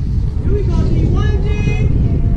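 Wind buffeting the microphone in a loud, steady low rumble, with people calling out twice over it.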